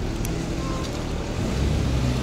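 A motor vehicle's engine running with a low hum that grows louder near the end, over a steady rush of wind noise on the microphone.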